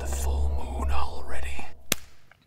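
Breathy, whispered voice sounds over a low drone that fades out, then a sharp click shortly before the end.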